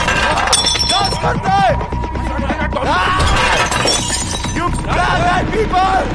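Glass shattering about half a second in, over men's shouting voices and a music score.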